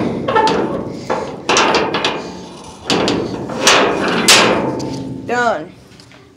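Repeated loud bangs on steel sheet, about half a dozen irregular strikes, each ringing briefly. Near the end there is a short falling pitched sound.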